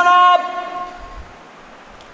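A man's voice holding the last long, drawn-out syllable of a chanted Quranic recitation ('ajran hasana'). The held note stops about a third of a second in and fades out over the next second, followed by a short pause.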